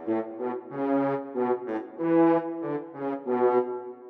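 Sampled French horn section from the Miroslav Philharmonik 2 orchestral library playing back a MIDI pattern: a major-key phrase at 120 bpm made of short, detached horn notes, some sounding together as chords.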